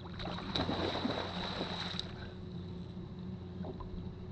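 A hooked bass thrashing and splashing at the water's surface beside the boat for about two seconds. A steady low hum runs underneath.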